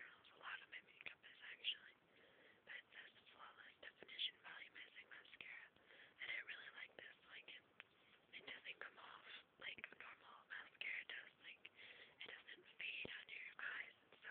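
Quiet whispered speech in short, breathy phrases, without a voiced tone.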